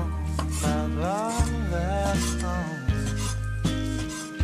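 A Chinese cleaver knocks on the chopping board a few times, about a second and a half apart, as it cuts cooked chicken breast into thick strips. A background song with singing plays throughout.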